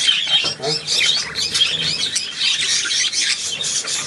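Many caged budgerigars chattering and warbling at once, a dense, unbroken mass of chirps and squawks.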